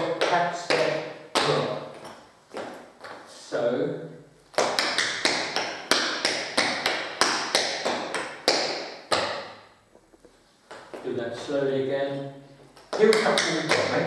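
Metal-plated tap shoes striking a hard tiled floor in quick rhythmic tap strikes as a dancer works through the Suzie Q step: heel shuffle, drop, tap step. The taps pause briefly about ten seconds in, and a voice is heard at moments alongside them.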